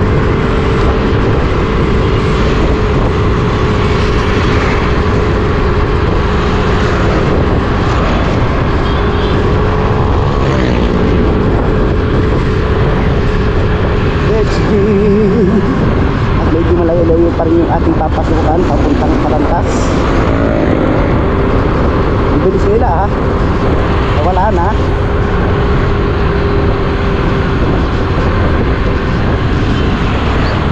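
Motorcycle engine running at a steady cruising speed, a constant drone with road and wind noise over it.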